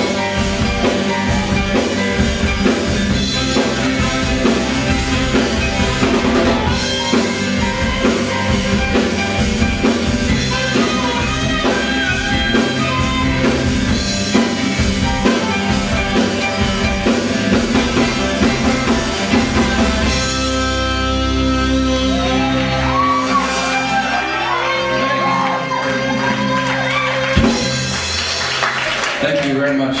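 Live rock band with saxophone, drum kit, guitars and a singer playing a full-band rock number. About twenty seconds in the drumming stops and the band holds a closing chord while a melody goes on over it.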